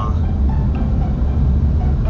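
Steady low rumble of a car's road and engine noise heard from inside the cabin while driving.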